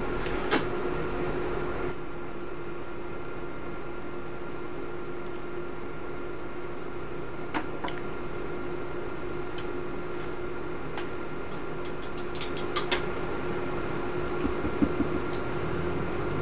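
A steady machine hum with a fainter higher whine, and a few small clicks and knocks, mostly late on.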